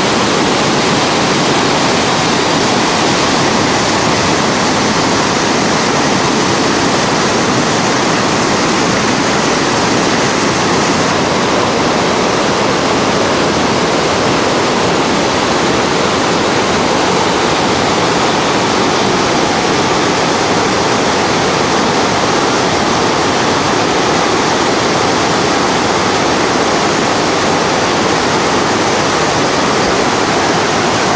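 Loud, steady rush of whitewater: river rapids pouring over a rock ledge.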